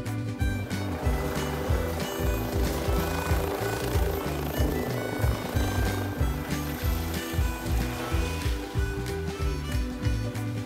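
Background music with a steady bass beat, with a helicopter's rotor noise mixed underneath through the middle as it flies away.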